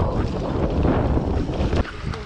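Wind rushing over the microphone of a mountain bike riding fast down a dirt trail, with tyre rumble and short rattles and knocks from the bike over bumps.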